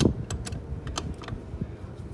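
Small metal open-end wrench clicking and tapping against the bolt and bracket of a bicycle trailer hitch: a handful of light, irregular clicks, most of them in the first second and a half.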